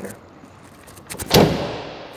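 Ford F-250 Super Duty pickup tailgate being swung shut: a few light clicks, then about a second and a half in, one solid slam as it latches, dying away over the next second.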